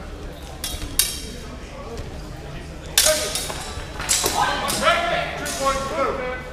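Steel swords clashing in a fencing bout: a handful of sharp metallic strikes with a ringing tail, the loudest about halfway through, with shouting voices echoing in a large hall.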